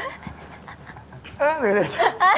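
A man imitating a dog with his voice: quiet panting breaths, then a louder whining cry that falls in pitch in the last half second.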